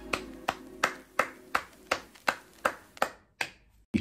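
Claps keeping an even beat, about three a second, growing fainter and stopping about three and a half seconds in, over the fading end of a song.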